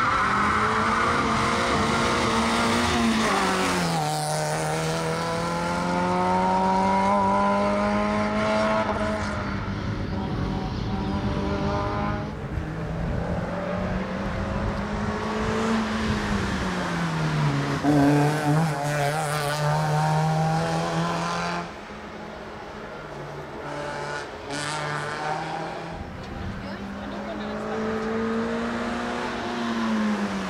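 Suzuki Swift Sport race car's four-cylinder engine driven hard. Its pitch climbs steadily and then drops back at gear changes, three times.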